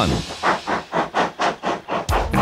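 Steam locomotive exhaust chuffing in a quick, even rhythm of about four or five beats a second.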